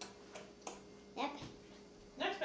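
Quiet room with a few light clicks in the first second and a brief faint voice just over a second in, over a steady low hum.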